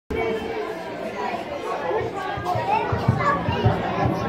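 Several children's voices chattering and calling out at once, overlapping and indistinct, with a couple of short low thumps near the end.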